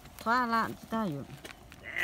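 People's voices: drawn-out, falling syllables from one voice, then a higher voice starting near the end, with no clear words.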